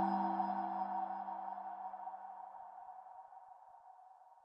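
The decaying tail of a short logo sound sting: a low held tone and a higher shimmering ring fade out steadily. The low tone dies away about three seconds in, while the shimmer keeps fading.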